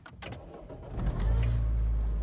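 A Mini's engine being started: a click, a short turn of the starter, then the engine catches about a second in and runs on with a steady low rumble.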